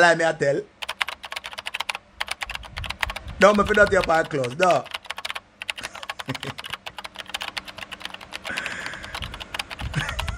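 Rapid clicking of computer keyboard keys being typed on, a dense run of keystrokes with brief gaps, starting about a second in and going on to the end. A man's voice cuts in briefly at the start and again for about a second and a half in the middle.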